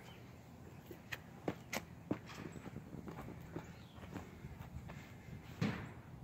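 Soft scuffs, shuffles and clothing rustle as a man in a canvas work jacket lowers himself from kneeling to sitting on brick pavers: a few light clicks and scrapes, the loudest near the end.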